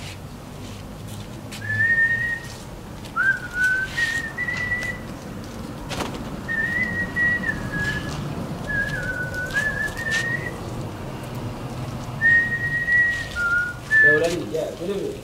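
A man whistling a tune in short phrases with pauses between them, the melody wavering up and down.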